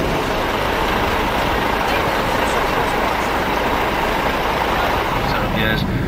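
Steady running noise of a moving road vehicle, heard from inside, with a voice starting near the end.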